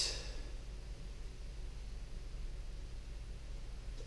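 Quiet room tone with a steady low hum, and a brief breath right at the start.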